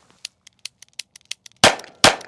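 A rapid run of faint clicks, about six a second, then one loud shot from a Webley Mk VI .455 revolver about a second and a half in, with a short ringing tail.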